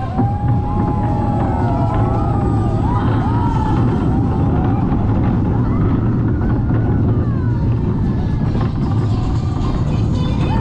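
Vekoma family roller coaster train running along its steel track: a loud, steady low rumble of the wheels, with wavering high-pitched tones that rise and fall over it.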